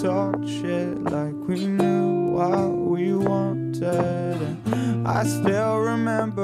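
A slow electronic pop song's instrumental passage: acoustic guitar plays plucked, strummed chords over long held low notes.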